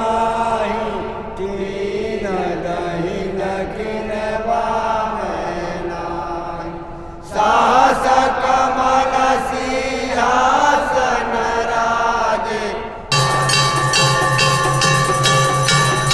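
Devotional aarti singing in a man's chanting voice, which gives way abruptly about seven seconds in to louder singing by a group of voices. Near the end it changes abruptly again to a quick regular rhythm of temple bell and dholak drum beats under a steady held tone.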